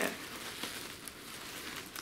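Soft, steady rustling and crinkling of wrapping as items are handled in a wicker hamper.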